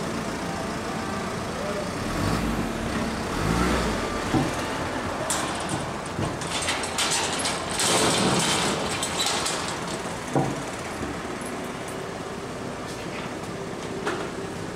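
A van's engine running, with rattling and scraping of a sheet-metal door being pushed shut in the middle, and a single metallic clack about ten seconds in.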